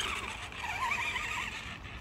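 4x4 Granite RC monster truck's electric motor and drivetrain whining faintly as it drives across grass, the pitch wavering up and down with the throttle.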